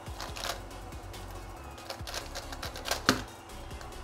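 GAN Skewb M Enhanced magnetic skewb puzzle turned rapidly in a speedsolve: a fast run of plastic clicks and clacks as the corners snap into place, ending in one sharp knock about three seconds in as the solve finishes.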